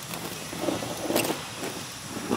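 Large metal plate lid, heaped with charcoal embers for dum cooking, scraping as it is dragged across the rim of a big cooking pot, with a sharp metallic clink just past halfway. The lid is coming off at the end of the dum stage, uncovering the cooked biryani.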